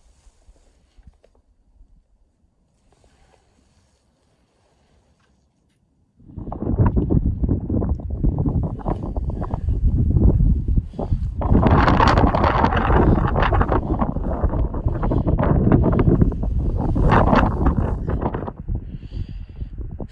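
Wind buffeting the microphone on an exposed mountain ridge: nearly quiet at first, then about six seconds in a loud, low rumbling noise starts abruptly and runs on in uneven gusts.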